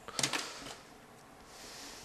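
A few soft clicks near the start as a pen knocks against the fingers while being spun, then faint rustling from the hand and sleeve moving.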